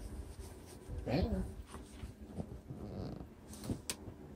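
A short vocal call gliding up and down in pitch about a second in, a fainter one near three seconds, and a sharp click just before the end.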